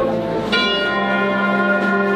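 Wind band playing a Semana Santa processional march, with a new sustained brass chord setting in about half a second in.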